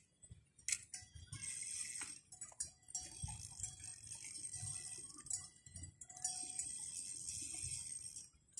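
High-pitched insect chirring at dusk, coming in spells of a couple of seconds with short gaps between, over scattered faint clicks and low rumble.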